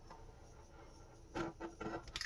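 Faint, steady hiss of a small handheld butane torch flame played over wet acrylic paint, with a short, louder sound near the end.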